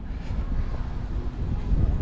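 Wind buffeting an action camera's microphone: a low, uneven rumble.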